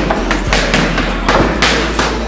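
Boxing gloves smacking into focus mitts in quick combinations, about five sharp hits in two seconds, over background music.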